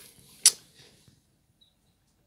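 A single short, sharp click about half a second in, close to the microphone.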